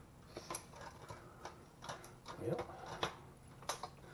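Light, irregular clicks and taps of a bird feeder's wire cage, spring and lid being handled and fitted back together by hand, about half a dozen small knocks.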